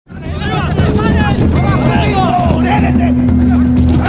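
Voices talking and calling over a steady low rumble, with a steady hum joining about halfway through; it all fades up from silence at the start.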